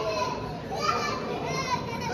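Children's voices talking and calling out over the general chatter of a crowd.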